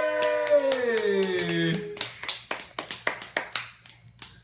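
A child's sung note is held and then slides down in pitch, ending about two seconds in, over hand clapping. Once the note stops, the clapping goes on as a quick run of claps, about six a second, fading near the end.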